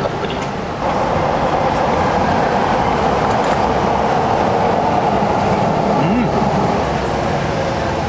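Loud, steady rumbling noise of a passing vehicle, swelling about a second in and holding on.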